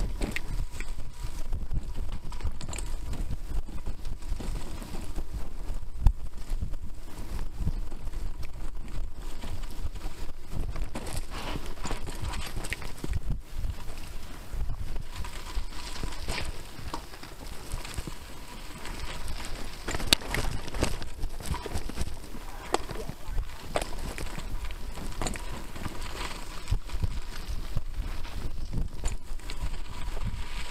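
A mountain bike ridden over a rough dirt trail: a steady rumble of tyres and air on the microphone, with irregular knocks and rattles from bumps. Sharper knocks come about six seconds in and again about twenty seconds in.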